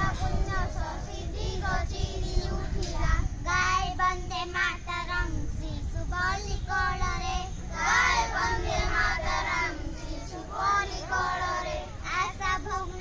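A group of schoolchildren singing together in unison over a steady low rumble.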